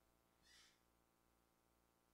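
Near silence in a pause of the broadcast commentary, with one brief faint hiss about half a second in.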